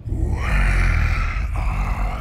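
Film sound design of the dragon Smaug: a deep growling rumble that starts suddenly, with a rushing hiss layered over it.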